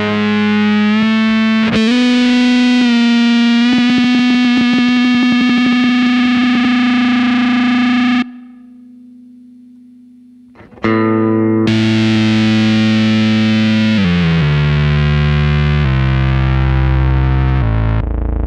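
Electric guitar through a Keeley Octa Psi fuzz and octave pitch-shifter pedal: heavily fuzzed, sustained notes with pitch-shift ramping. The sound cuts off suddenly about eight seconds in, leaving only a faint low tone. About three seconds later a new note starts, and the pitch then steps down several times toward the end.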